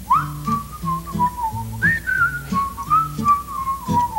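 A whistled melody over a plucked bass line, an instrumental break in a comic song. The whistle slides up into a held, wavering note and leaps higher about two seconds in before easing back down.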